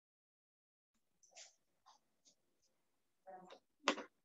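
Faint, clipped fragments of a person's voice cutting in and out, as through a video call's noise suppression, with a sharp click near the end.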